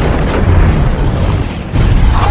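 A huge explosion: a loud boom that runs on as a deep, noisy rumble, with a fresh surge of blast just before the end.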